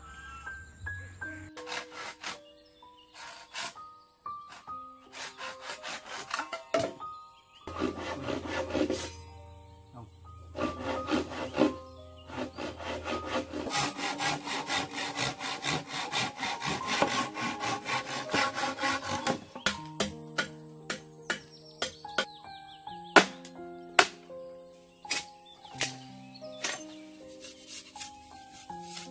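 Hand saw cutting across a dry bamboo pole in a quick run of back-and-forth strokes, over background music. Separate sharp knocks follow in the later part, a long knife striking bamboo.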